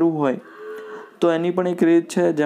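A man's voice in drawn-out syllables: one falling, then a short pause, then a string of held syllables.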